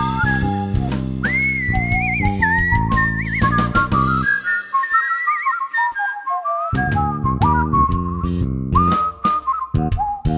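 A person whistling a melody with warbling ornaments over a backing band of bass, guitar and drums. The bass drops out for a couple of seconds midway, leaving the whistling nearly alone, then comes back in.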